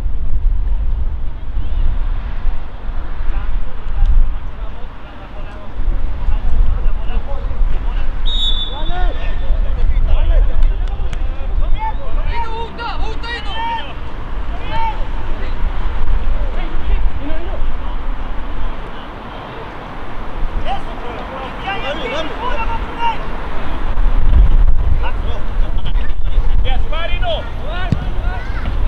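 Voices of players and onlookers calling and shouting across an open football pitch, over a steady low rumble of wind on the microphone.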